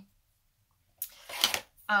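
About a second of near silence, then a sharp click and a short breathy noise, and a woman's voice beginning to speak ('uh') near the end.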